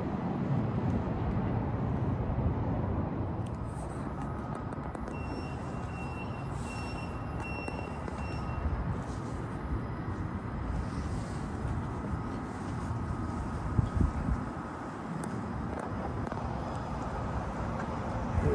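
Portland Aerial Tram cabin pulling out of the station: a steady low rumble and hiss from the car and its haul cables. Faint high tones pulse for a few seconds near the middle, and there is a single thump near the end.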